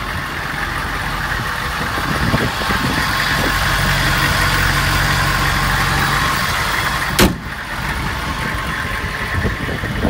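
Step van's engine idling steadily with its hood open, then one sharp slam about seven seconds in as the hood is shut, after which the idle is a little more muffled.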